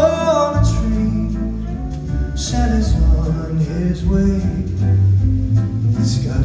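A live band playing a song, with a voice singing over the instruments.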